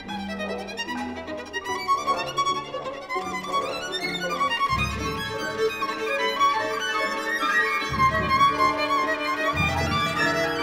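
Solo violin playing dense, high figures over an orchestra in a contemporary violin concerto, with a few deep low hits from the orchestra about five and eight seconds in.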